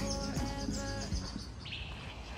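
Birds chirping: a quick run of high repeated notes in the first half and another call near the end, over music that fades out about halfway through.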